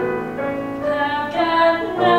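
A woman singing long held notes of a musical-theatre song, accompanied by piano, the melody moving to new notes twice.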